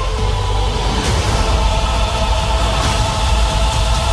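Dark, dramatic trailer score with heavy bass and sustained tones, swelling with a rushing whoosh about a second in and again near three seconds.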